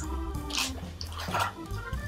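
Soft background music with held, organ-like notes, with two brief swishes of handling noise about half a second and a second and a half in.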